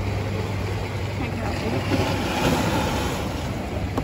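A steady low hum, like a motor running nearby, under an even rush of outdoor noise, with faint voices in the background.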